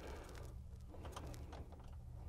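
Faint light clicks and rustling of hands handling the brake pedal and pushrod under the dash, over a low steady hum.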